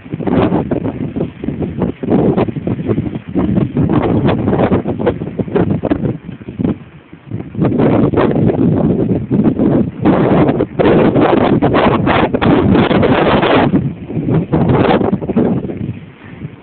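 Wind buffeting the microphone in irregular gusts, with bumps and rumble, loudest for a few seconds about two-thirds of the way through.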